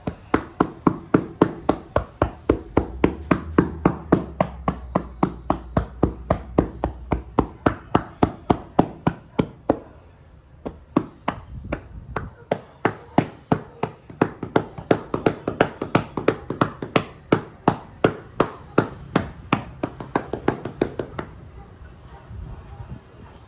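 Percussive massage: hands striking a person's back through a towel in a quick, even rhythm of about four strikes a second, pausing briefly about halfway through and then resuming.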